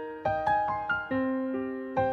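Piano-toned keyboard playing a slow single-note melody in a pop ballad's instrumental passage, each note struck and left to ring down, five or six notes in all.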